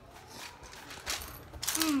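Plastic Lego bricks clicking and shifting under bare feet in a few short bursts, with a pained hum near the end.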